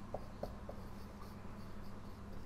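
Felt-tip marker writing on a whiteboard, faint, with a few short strokes in the first second.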